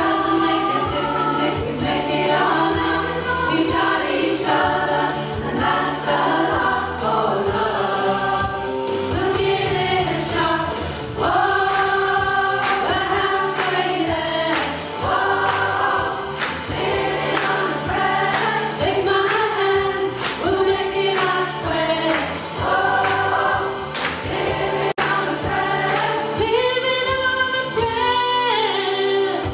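A large community rock choir of mostly women's voices singing a pop-rock song together, over steady low accompaniment with a regular beat.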